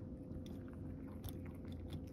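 A cat eating a dish of chopped carrot dressed with bonito flakes: a few faint, short chewing crunches.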